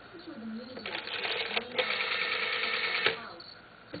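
Black rotary telephone's bell ringing, a rapid metallic trill. It starts about a second in, grows louder, and cuts off near three seconds.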